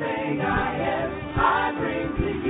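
A vocal group singing a song together, with instrumental backing and short low beats under the voices.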